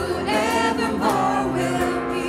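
Worship team singing a contemporary praise song, a male lead voice with two female voices in harmony, over instrumental accompaniment.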